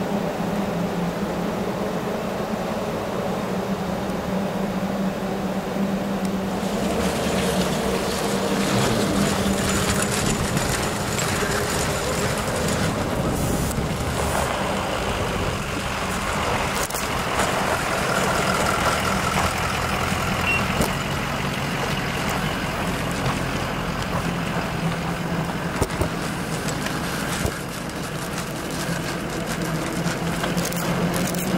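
Parked emergency vehicles idling, a steady low engine hum, with a denser noise of movement and scattered clicks through most of the middle.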